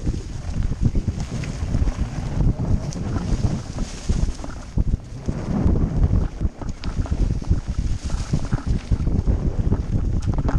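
Wind rushing over the microphone of a camera riding on a mountain bike descending a rough dirt forest trail, with constant knocks and rattles as the bike jolts over roots and stones.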